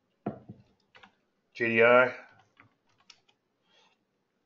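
A few quiet keystrokes on a computer keyboard, typing a stock ticker symbol into charting software. A short voiced sound comes near the start, and a louder drawn-out vocal sound about a second and a half in.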